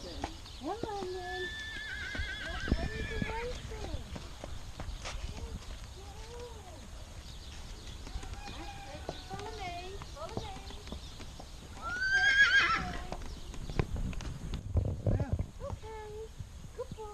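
Horses whinnying: a wavering call a couple of seconds in and a loud, rising whinny about twelve seconds in, over the steps of a horse's hooves on dirt.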